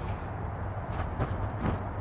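Uneven low outdoor rumble with a few faint clicks, and no speech.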